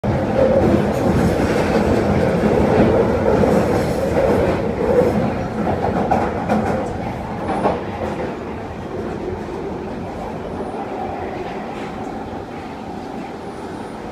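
London Underground Northern line train running in a tunnel, heard from inside the carriage: a loud, steady rumble of wheels on rails. It eases off gradually over the seconds.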